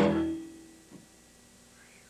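A rock band's closing chord on electric guitars, bass and drums dying away within about half a second, one low note lingering a little longer until a small click about a second in. After that only a faint steady hum remains.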